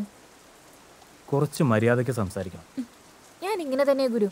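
Film dialogue: a low man's voice with a falling pitch, then a higher voice near the end, over a steady faint hiss.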